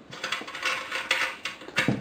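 Metal clicking and scraping of a threaded N-type RF connector being unscrewed and pulled off a transmitter's antenna socket, a quick run of small clicks and rasps.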